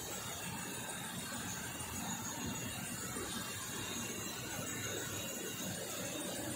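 Steady running noise of an electric high-pressure water jet machine, its electric motor and pump humming and hissing evenly.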